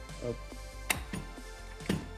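A sharp plastic click about a second in, as the transom-mount bracket of an ePropulsion eLite electric outboard is tilted up and its tilt lock catches. Background music plays throughout.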